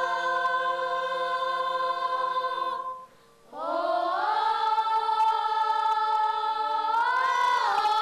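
A group of children singing a traditional Tsou song unaccompanied, in long notes held together. They break off briefly about three seconds in, then start a new held note whose pitch bends up and back down near the end.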